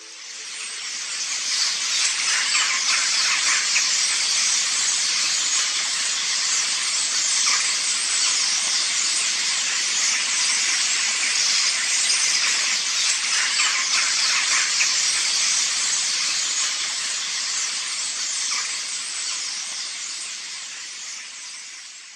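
A dense, steady din of thousands of common starlings calling together in their roost trees as they settle for the night. It fades in over the first couple of seconds and fades out near the end.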